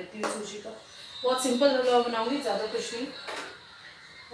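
A woman speaking in short phrases, with a pause in the middle.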